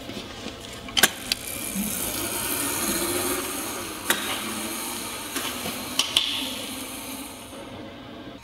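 Razor electric mini dirt bike pulling away: a low motor whine rises and holds over a steady rattling hiss. Sharp clicks come about one, four and six seconds in.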